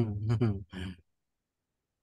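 A person's voice speaking briefly for about a second, then cutting off into dead silence.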